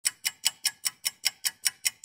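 Stopwatch ticking sound effect: evenly spaced ticks, about five a second.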